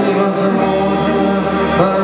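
Live rock music played loud and steady: a male voice singing at the microphone over electric guitar and the rest of the band.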